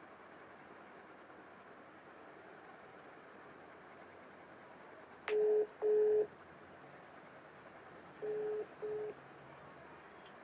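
Telephone call tone heard over a steady hiss: a pair of short beeps at one low pitch about five seconds in, then a fainter pair about three seconds later, in the double-beep pattern of a ringing tone.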